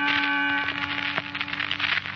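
Sustained organ chord of a music bridge in a 1940s radio drama, held steady with a change of notes at the start and a few upper notes dropping out a little past halfway.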